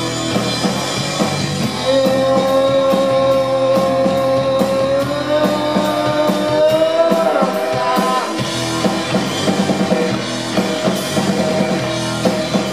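Live rock band playing: electric guitar, bass guitar and drum kit with cymbals, and a male singer. About two seconds in, a long held note starts, bends slightly upward partway through and ends about eight seconds in.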